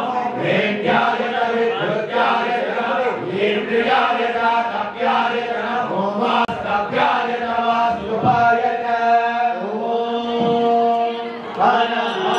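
Sanskrit Vedic mantras to Shiva chanted over a steady low drone, with long held notes near the end.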